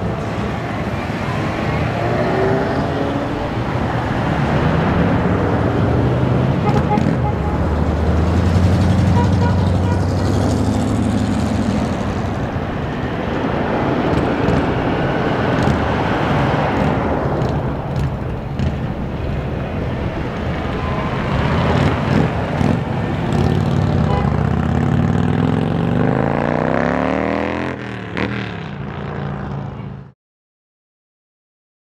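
A line of cars, Jeeps and pickup trucks driving past one after another, engines running and tyres on the road, the engine notes rising and falling as each vehicle passes. The sound cuts off suddenly at the end.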